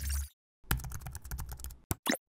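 Computer keyboard typing sound effect: a quick run of key clicks lasting about a second, ending in a single sharp click, after a short low thud at the start.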